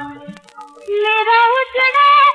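A 1950s Hindi film song played from a mono vinyl record. A held instrumental note fades to a brief lull, then a high female voice enters about a second in with a rising, wavering sung phrase.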